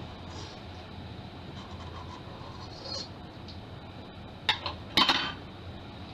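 Two sharp metallic clinks, about four and a half and five seconds in, from handling the stainless steel bowl of a stand mixer, over a faint steady low hum.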